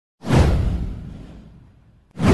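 Swoosh sound effect with a deep boom underneath, starting suddenly about a quarter second in and fading away over about a second and a half.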